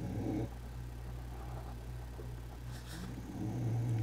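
A pet snoring, with louder breaths near the start and near the end, over a low steady hum.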